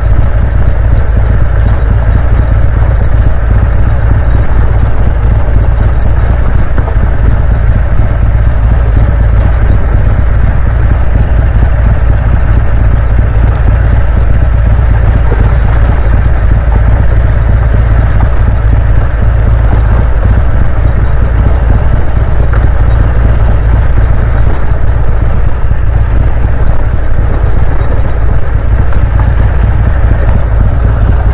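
Harley-Davidson touring motorcycle riding on a gravel road, heard through a helmet-mounted mic: a loud, steady low rumble of engine and wind, with road noise from the tyres on the dirt.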